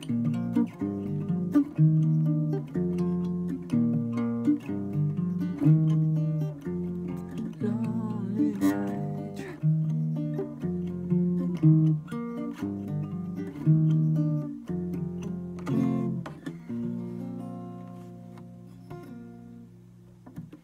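Acoustic guitar playing plucked chords in an even rhythm, then a last chord about three-quarters of the way through that rings on and fades out.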